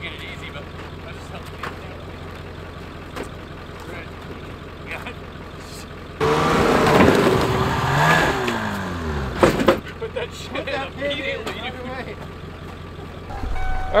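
A low, steady engine idle, then a snowmobile engine revving hard about six seconds in as the sled is driven up a steel trailer ramp. The revs slide down over about three seconds and end with a sharp knock.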